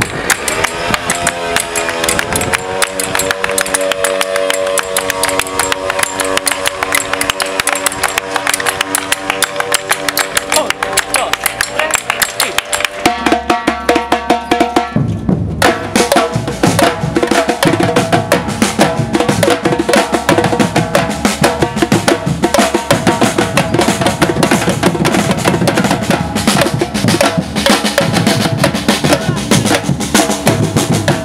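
Batucada drum group of snare drums, repiniques and surdo bass drums playing: fast snare rolls at first, then about halfway through the deep surdos come in and the whole group plays a loud, fast samba rhythm.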